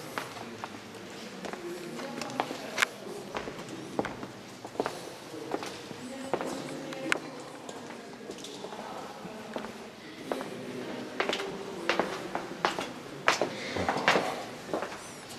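Irregular footsteps and small sharp knocks on a cave walkway, over faint, indistinct voices in the background.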